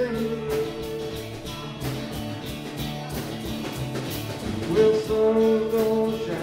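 Small live acoustic band playing, with strummed acoustic guitars keeping a steady rhythm and a long held note near the end.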